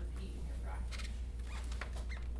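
A steady low hum runs throughout. A few short rustling sounds and faint, distant speech come partway through.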